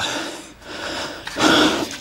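A man breathing heavily into the microphone, two loud breaths, the second about a second and a half in. He is out of breath after kneeling down and getting up again at each of four tyres.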